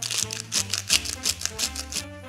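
A hand salt mill being twisted to grind salt, in a fast run of short rasping strokes, several a second, over background music.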